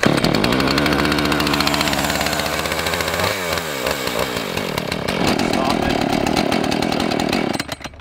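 Husqvarna two-stroke chainsaw engine starting on the pull with the choke open, then running loud and steady. Its pitch glides down about three and a half seconds in and changes again about five seconds in. It cuts off abruptly shortly before the end.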